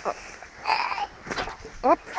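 Voices: a brief vocal sound about a second in, then a short exclaimed "op!" near the end.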